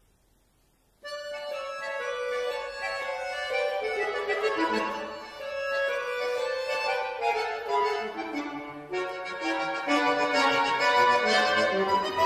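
Bayan, a Russian chromatic button accordion, playing a classical solo piece, starting suddenly about a second in after near silence, with a brief dip in loudness near nine seconds.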